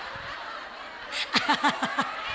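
A woman laughing, a short run of about five quick 'ha' bursts starting a little over a second in, over a low murmur from a laughing audience.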